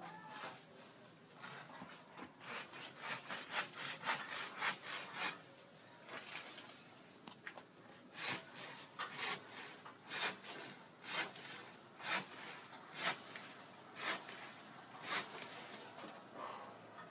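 Hand saw cutting through a tree trunk in back-and-forth strokes, a quick run of about two strokes a second, then slower strokes about a second apart.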